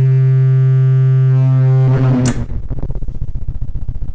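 Lyra-8 analogue drone synthesizer sounding a steady, rich low drone, which about two seconds in breaks into a fast pulsing, fluttering texture with a brief bright swish.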